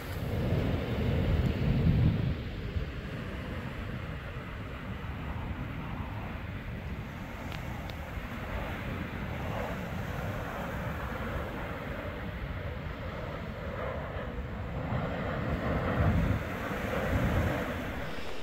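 Wind buffeting the microphone over waves washing up the beach, a steady noisy rumble that is louder in the first few seconds.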